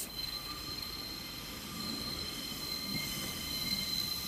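Class 142 Pacer diesel multiple unit approaching in the distance: a low rumble that grows slowly louder, with a thin steady high-pitched whine over it.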